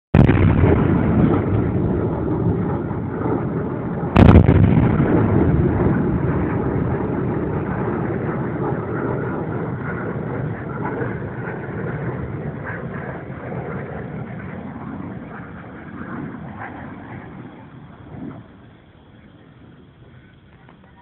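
Distant shelling by a BM-21 Grad multiple rocket launcher: a continuous rumble of rockets and explosions with one sharp, loud bang about four seconds in, the rumble slowly dying away over the following fifteen seconds.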